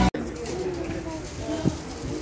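Outdoor background murmur with faint, indistinct voices and one short knock about two-thirds of the way through; loud music cuts off abruptly at the very start.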